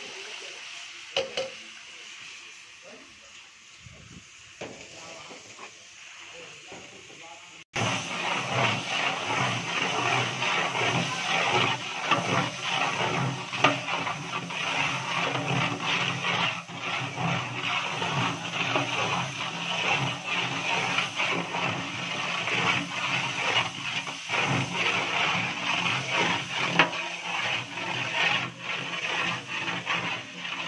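Metal ladle clicking against a large metal cooking pot as the rice water is stirred over a wood fire. About eight seconds in, the sound cuts abruptly to a louder, busy mix of indistinct background voices and splashing from the stirred pot.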